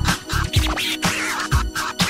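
House music with a steady kick drum about twice a second, and a DJ scratching on the decks over it: quick back-and-forth sweeps that rise and fall in pitch.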